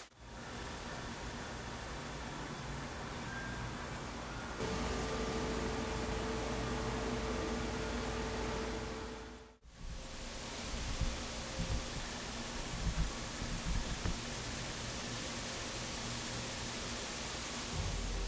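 Steady background hiss with no clear source. A faint steady hum joins it about five seconds in, the sound drops out briefly near the middle, and a few faint low bumps come through in the second half.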